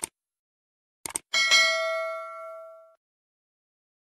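Sound effects from a subscribe-button animation: a mouse click at the start and a quick double click about a second in, then one bright notification-bell ding that rings out and fades over about a second and a half.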